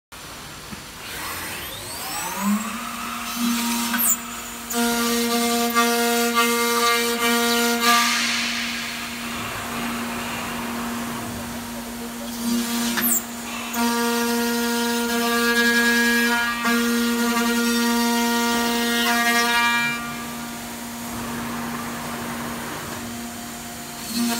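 The spindle of a CNC aluminum-profile machining center spins up with a rising whine, then runs at a steady pitch. It grows louder and harsher in two long stretches as the cutter works the aluminum section, with a few sharp clicks along the way.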